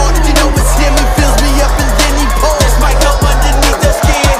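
Hip-hop backing music with a heavy, steady bass and a regular beat.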